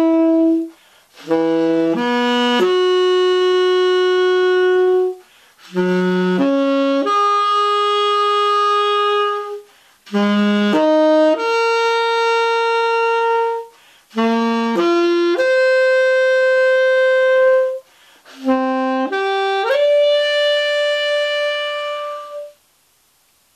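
Tenor saxophone, a The Martin tenor with an Otto Link New Vintage Super Tone Master 7 metal mouthpiece and a Rico Royal #3 reed, played solo. It plays five short phrases, each a few quick notes ending on a long held note, with a brief breath between phrases. The held notes climb higher phrase by phrase.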